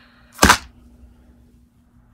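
One short, sharp knock about half a second in, with only faint hiss around it.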